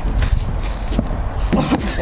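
Running footsteps thudding on dry grassy ground, coming closer, with a man's voice breaking in near the end.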